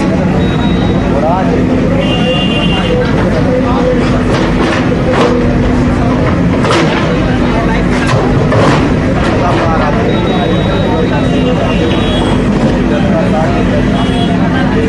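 Backhoe loader engine running steadily, with several sharp knocks as its bucket breaks up concrete slabs, over the voices of a crowd.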